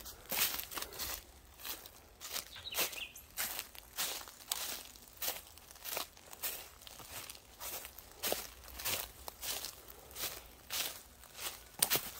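Footsteps crunching through dry leaf litter at a steady walking pace, with leaves rustling underfoot.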